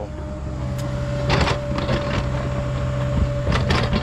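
Mini excavator running, its diesel engine and hydraulics giving a steady hum with a high whine. Two short bursts of scraping knocks, a little over a second in and near the end, come from the bucket digging a drain trench into rocky ground.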